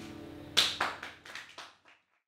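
Acoustic guitar's last notes dying away, then a few hand claps, about four a second, getting weaker and cut off just before the end.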